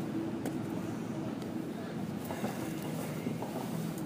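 Quiet outdoor city ambience: a steady hiss of distant traffic and wind.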